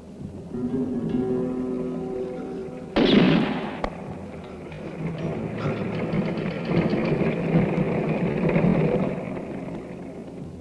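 Film soundtrack: steady music for the first few seconds, then a single loud gunshot about three seconds in that rings out briefly, followed by a noisy stretch of film sound.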